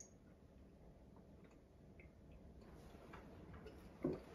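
Near silence as a glass of salt water is drunk down: only a few faint, soft clicks of swallowing over room tone.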